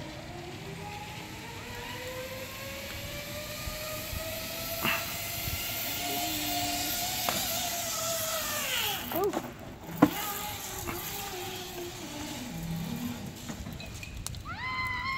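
Zip line trolley pulleys running along the cable: a whine that rises in pitch as the rider picks up speed, holds, then drops away as the trolley slows. A sharp knock comes about ten seconds in.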